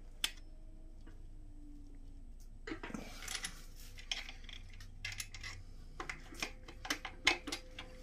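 Light metal clicks and scrapes of a connecting-rod cap being worked loose by hand from its crankshaft journal in a Honda F23A1 block. One click comes just after the start, then after a couple of quiet seconds a run of scattered clinks follows.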